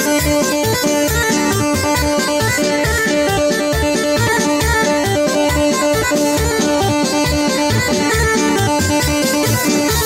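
Instrumental Bosnian izvorna folk music for a kolo dance, with a quick, steady beat under a held melody line.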